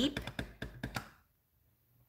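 Clear acrylic stamp block tapped rapidly onto a white craft ink pad to ink the stamp: a quick run of light taps, about eight a second, stopping about a second in.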